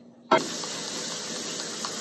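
Kitchen faucet running a stream of water into a mug in the sink: a steady rushing that starts suddenly about a third of a second in.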